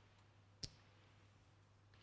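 Near silence with a faint low steady hum, broken once by a single short, sharp click about half a second in.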